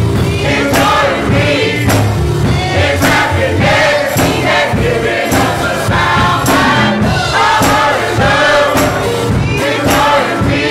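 Gospel choir singing, with a steady beat of sharp strokes a little faster than once a second underneath.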